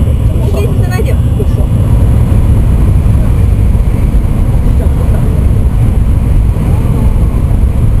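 Interior running noise of an N700 Shinkansen train at speed: a loud, steady low rumble. Passengers' voices are heard over it in the first second or so.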